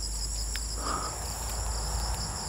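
Steady, high-pitched chorus of field insects, several unbroken shrill tones layered together, with a faint low rumble underneath.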